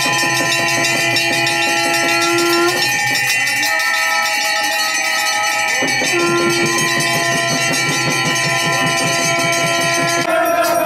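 Hanging brass temple bells rung continuously, a dense clanging over sustained ringing tones, with hands clapping along.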